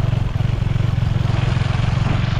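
Motorcycle engine running steadily while riding, its quick, even firing pulses low and constant, under a steady rush of wind and road noise.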